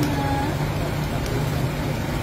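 A steady low rumble throughout, with a short snatch of a voice in the first half second.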